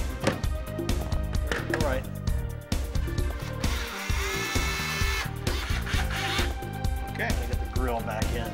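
Cordless drill-driver spinning up and running steadily for about a second and a half, midway through, driving the mounting screws of an in-wall speaker. Background music with a steady beat plays throughout.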